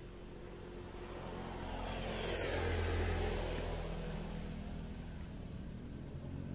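A motor vehicle driving past. Engine and tyre noise swell to a peak about three seconds in, then fade away.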